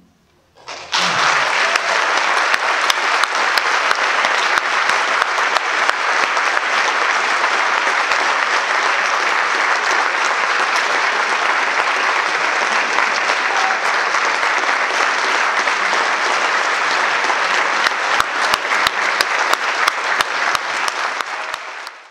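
Audience applauding in a concert hall: after a second of near silence following the band's final chord, dense applause breaks out and holds steady, with separate claps standing out more near the end.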